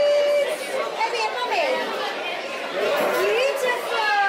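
Indistinct voices and chatter in a busy restaurant dining room, with voices rising and falling in pitch.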